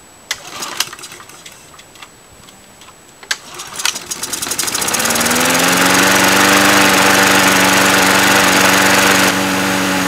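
Briggs & Stratton Quantum walk-behind lawn mower engine cold-started on the choke without starting fluid: a few sharp clicks, then it catches about four seconds in and settles into a steady, loud run, easing slightly in level near the end.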